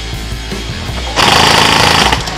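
An airsoft gun firing a loud, very rapid full-auto burst starting a little past a second in and lasting under a second, over background music with a steady bass.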